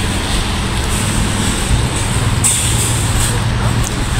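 Steady outdoor noise in a wet parking lot: a continuous rushing hiss over a low rumble, with no distinct events.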